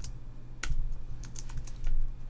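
Typing on a computer keyboard: a quick, irregular run of key clicks, with one louder keystroke about two-thirds of a second in.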